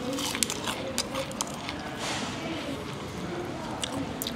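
Mouth-close crunching and chewing of crispy fried chicken, the batter coating crackling in many small sharp clicks, over faint background voices.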